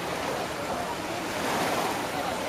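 Small waves washing onto a sandy shore in a steady surf hiss, with faint distant voices of bathers.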